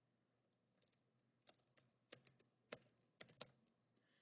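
Faint computer keyboard keystrokes, a scattered run of separate taps with short gaps between them.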